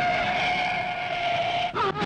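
Car tyres screeching in a long, steady skid under hard braking just before a head-on crash, ending near the end in a short falling squeal.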